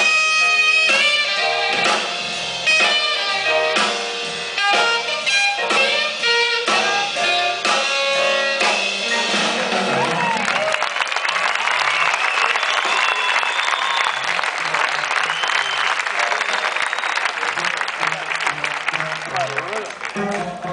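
Jazz big band of saxophones, brass, piano, bass and drums playing a passage of short, punchy ensemble chords. About halfway through, the music gives way to audience applause with cheering.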